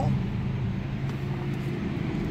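Steady low hum inside the cabin of a 2016 Toyota Prius that is switched on and standing still, with a couple of faint clicks.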